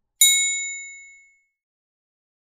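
A single bright metallic ding from a notification-bell sound effect, struck once and ringing out over about a second.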